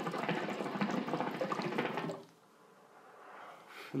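Hookah water bubbling in a dense, steady gurgle as smoke is drawn through its non-diffused downstem, stopping abruptly about two seconds in.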